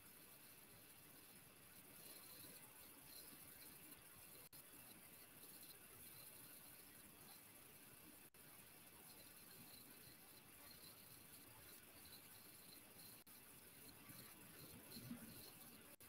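Near silence: faint room tone with faint small clicks and rustles of glass seed beads being slid by hand onto tigertail beading wire.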